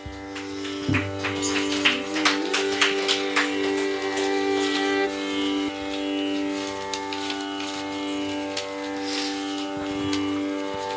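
Carnatic ensemble music: a steady drone held throughout, a violin sliding upward over it, and scattered mridangam and ghatam strokes in the first half. After about five seconds the drone carries on almost alone, with only an occasional stroke.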